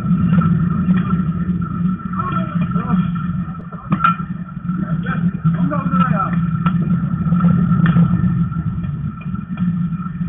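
Open-air baseball field sound: voices calling out on the field over a steady low rumble, with a few sharp knocks, the clearest about four seconds in.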